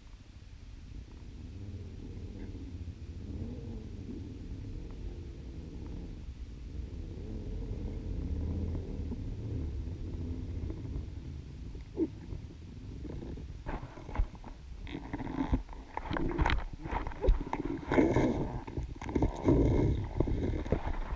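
Low underwater rumble, then, late on, a run of knocks and clicks that grow louder and closer: a freediver reaching the dive line and handling it beside the camera underwater.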